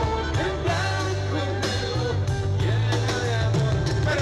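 Live band music from a concert stage, with a steady bass line, regular drum beats and a wavering melody over them, recorded from far back in the audience.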